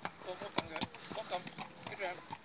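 A harnessed pony's hooves clopping on a gravel track as it walks pulling a carriage, in a series of irregular sharp strikes.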